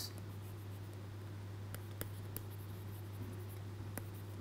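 Stylus writing on a tablet screen: faint scratching with a few light ticks, over a steady low hum.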